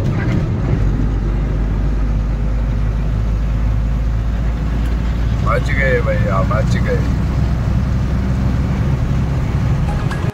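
Loaded diesel goods truck driving at night, its engine and road noise a steady low rumble heard from inside the cab, with a deep steady hum that sets in under a second in. A brief voice is heard about halfway through.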